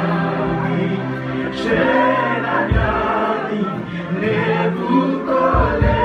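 Gospel worship music: a group of voices singing together over held low bass notes, with a few low drum thumps.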